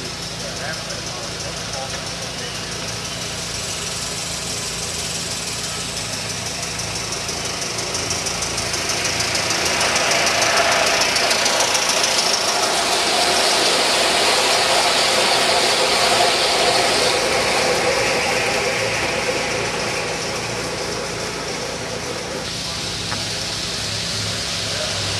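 Aster S2 live-steam model locomotive and its passenger cars running past on garden-railway track, a steady hiss and wheel rumble that grows louder as the train comes by, peaks for several seconds, then fades away.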